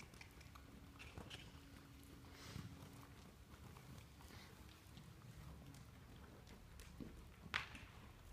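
Faint, muffled hoofbeats of a horse trotting on soft arena dirt, with one sharper knock near the end.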